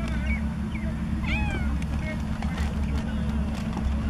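Cats meowing in a few short calls, with one longer meow about a second in that rises and then falls in pitch, over a steady low hum.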